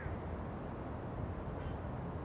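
Quiet outdoor background: a steady low rumble, with one faint, short, high chirp near the end.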